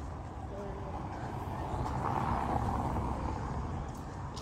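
A car passing on a city street: its road noise swells to a peak about halfway through and then fades, over a steady low traffic rumble.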